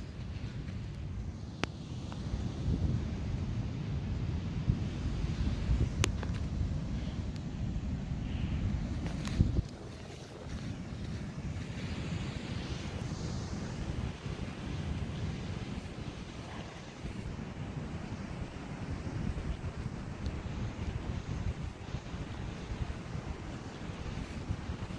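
Wind buffeting a phone's microphone in gusts, heaviest in the first ten seconds and then easing, with a few faint clicks.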